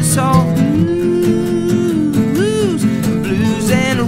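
Band playing a country-tinged rock song with strummed acoustic guitar. A held lead note comes in about half a second in, then swoops up and back down before the singing returns.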